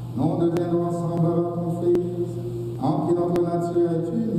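A priest chanting a prayer of the Mass in a man's voice, holding long notes on a steady reciting pitch, with a new phrase beginning at the start and another about three seconds in.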